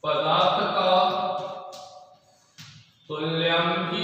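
A man's voice drawing out words in long, sing-song held syllables, in two phrases with a short pause between them: slow dictation of the words being written on the chalkboard.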